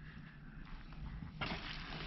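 Hands rummaging through worm castings in a plastic bin: faint rustling and crumbling of the soil that picks up a little over a second in.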